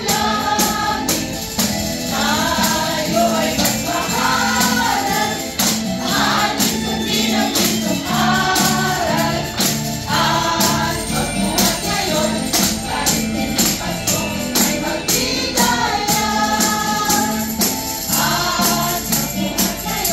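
A group of voices singing a Christmas carol together over a backing track with a steady beat and rhythmic percussion.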